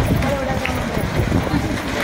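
Indistinct voices of people talking, with steady low rumbling noise underneath.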